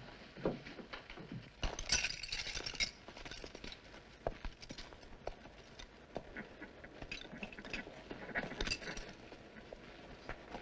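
Carriage horses standing in harness: harness fittings jingling with scattered clicks and knocks of shifting hooves and footsteps, rising to a louder burst of jingling about two seconds in and again near the end.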